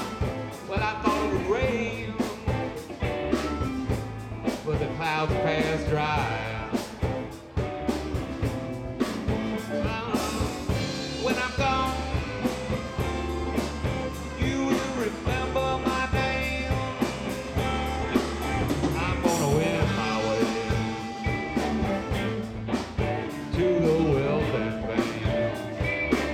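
Live blues band playing with electric guitars, bass guitar and drums, the guitar lines bending in pitch over a steady beat.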